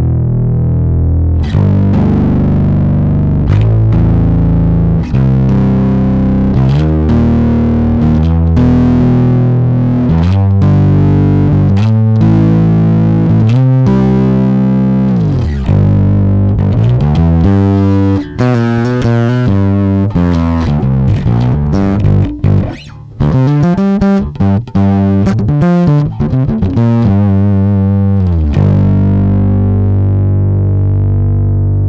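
Electric bass guitar played through a Crazy Tube Circuits Locomotive 12AY7 tube overdrive pedal, giving an overdriven, gritty bass tone. The riff starts on held low notes, slides down in pitch about halfway, runs into a passage of quick short notes, and ends on a long held note.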